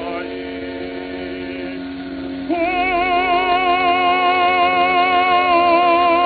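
Operatic lyric tenor on a 1904 acoustic recording with a narrow, dull sound. The accompaniment holds a steady chord, then about two and a half seconds in the tenor comes in louder on a long high note with wide vibrato and holds it.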